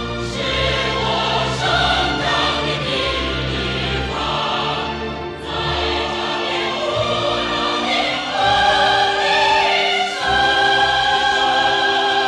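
A female vocalist singing a Chinese patriotic song with orchestral accompaniment, holding long notes in the second half.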